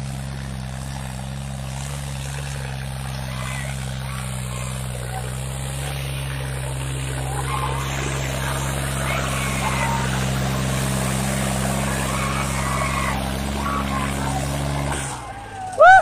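John Deere 5310's turbocharged diesel engine labouring steadily under load as the tractor drags a harrow, its turbocharger failing. The drone drops away about a second before the end, as a crowd breaks into loud shouts.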